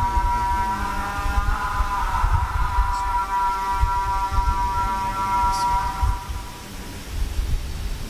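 A single voice holding one long sung note through the stage sound system, with a slight waver about two seconds in. The note fades out about six seconds in. Low rumbling thumps run underneath it.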